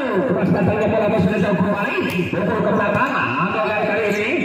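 Many voices at once: spectators and players shouting and chattering during a volleyball rally, with a loud falling shout at the very start.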